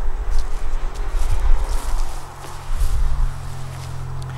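Footsteps and rustling in grass as a person walks up and kneels, over a low, fluctuating rumble.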